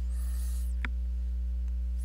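Steady low electrical mains hum on the recording, with one short faint click a little under a second in.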